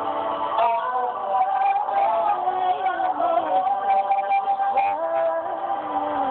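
Music from a song recording being played back: a melody winding up and down over held chords.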